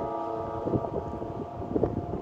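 A train horn sounding one long, steady multi-tone chord. Wind gusts on the microphone come twice, about two-thirds of a second in and near the end.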